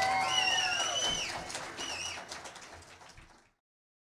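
The last notes of a rock duo's electric guitar and drums ring out with a high, wavering whistle-like tone on top, fading out to silence a little past halfway.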